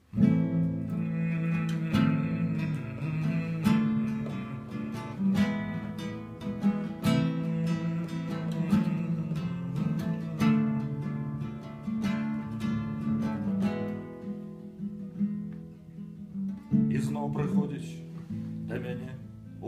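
Classical guitar played solo, chords strummed and picked at a slow, even pace.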